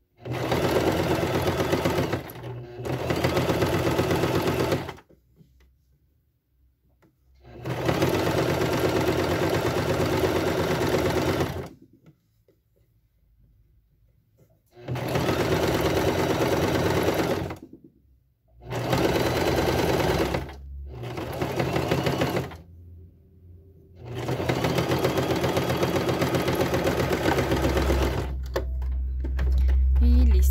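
Domestic electric sewing machine stitching a zigzag through knit fabric, running in spells of two to six seconds with short stops between them. A low rumble comes in near the end.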